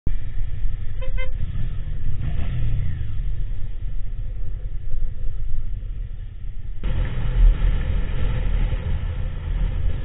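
A vehicle horn gives two short single-pitched toots about a second in, over the low rumble of the motorcycle and surrounding traffic. After about seven seconds the sound steps up to louder wind and road noise of riding.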